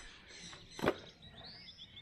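One sharp plastic click a little under a second in as the hinged cover of an outdoor electrical box is opened, with a bird chirping faintly in the background near the end.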